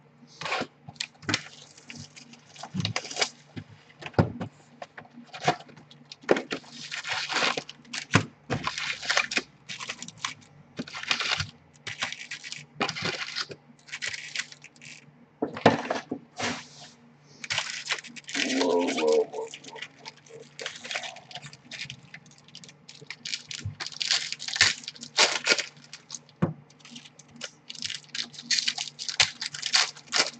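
Plastic wrapping and foil baseball-card packs crinkling and rustling in many short, irregular bursts as sealed card boxes are unwrapped and the packs are pulled out and stacked.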